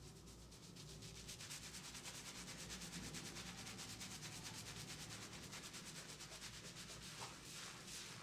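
Fingers scrubbing thick shampoo lather on a man's scalp, a soft, fast, even rhythm of rubbing strokes that builds up about a second and a half in.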